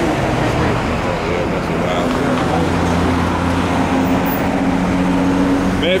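Road traffic noise with a motor vehicle's engine running as a steady low hum that holds from about two seconds in.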